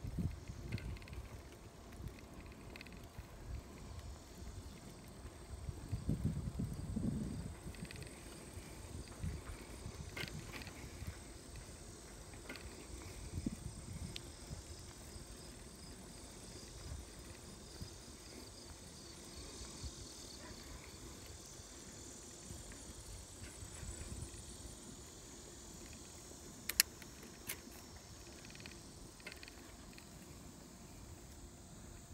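Bicycle rolling along a paved trail: low tyre rumble and wind on the microphone, swelling for a couple of seconds about six seconds in, with a single sharp click near the end.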